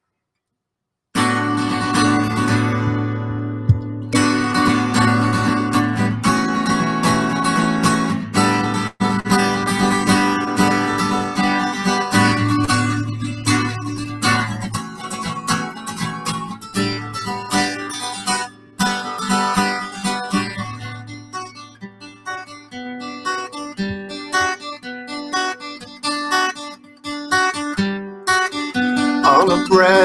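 Acoustic guitar strummed in a steady rhythm, playing a song's instrumental introduction. It starts about a second in after a moment of silence and cuts out very briefly a couple of times.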